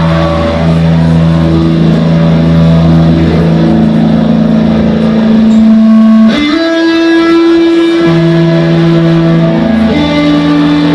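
Live rock band's electric guitars ringing out long, sustained notes, with the chord changing to new held notes about six seconds in.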